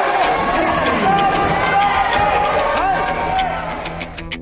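Many people shouting over one another at ringside during a Muay Thai bout: long, drawn-out yells from the cornermen and the crowd.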